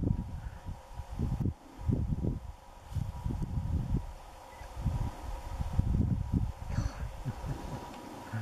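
Wind buffeting the microphone in irregular low rumbling gusts, over a faint steady hum.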